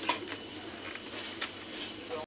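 Steady shop background noise with a faint high whine, and a couple of light knocks as a hand blender is set down in its cardboard box.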